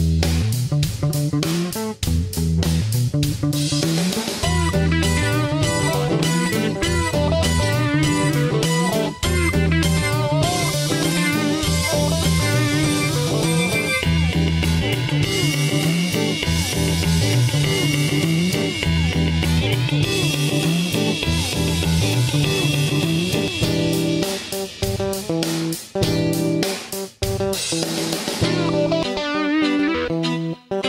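Background music: guitar-led instrumental with bass and a steady beat.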